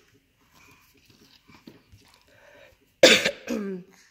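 A loud, sudden cough about three seconds in, close to the microphone, ending in a short voiced sound that falls in pitch.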